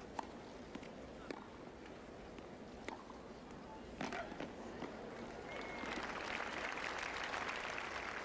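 Tennis rally on a hard court: four sharp racket strikes of the ball spaced a second or so apart, then crowd applause swelling from about five and a half seconds in as the point ends.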